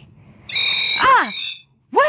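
A person's voice making a high-pitched squeal, held for about half a second, that swoops up and then drops away steeply.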